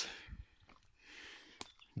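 Near silence in a pause of speech: the tail of a spoken word fades out at the start, a faint brief hiss comes about a second in, and a single sharp click sounds near the end.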